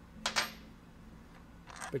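Light clicks and clinks of small metal tool parts being handled: a brief cluster about a quarter second in, and more near the end.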